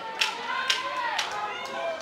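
Sharp knocks ringing out about twice a second at the ring, over shouting from the crowd and the corners. They fall around the ten-second mark of the round, typical of the ten-second warning knocked out at ringside.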